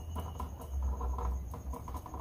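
Small metal nuts being turned by hand onto threaded screws: a run of light, quick scratching and clicking from the threads and the fingers.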